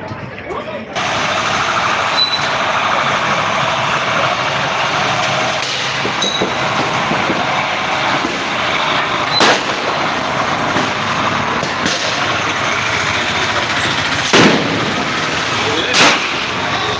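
Sharp, loud bangs of police firing during a street protest, the two loudest about nine and fourteen seconds in, with a few smaller ones between. They come over steady street noise of voices and a truck.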